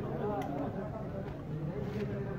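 Background voices of people talking, over a low steady rumble, with a short sharp click about half a second in.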